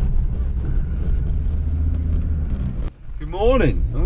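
Low, steady engine and road rumble heard from inside a pickup's cab while it is driven along a farm track; it breaks off suddenly near the end, and a man's voice follows over the cab rumble.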